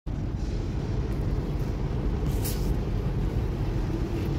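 Steady low rumble of outdoor street noise, with a short hiss about two and a half seconds in.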